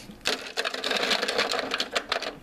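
A handful of plastic action figures clattering against each other and the hard plastic hull as they are crammed into the toy hovercraft's troop compartment: a fast run of clicks and rattles starting a moment in.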